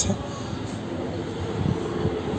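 Distant city traffic, a steady low hum with no distinct events.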